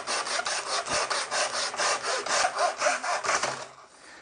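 Hand saw in a Nobex mitre saw box crosscutting a piece of timber to square its end, in quick, even back-and-forth strokes that stop shortly before the end.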